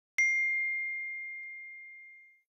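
Text-message notification ding: a single bell-like chime that strikes once and rings out, fading slowly over about two seconds.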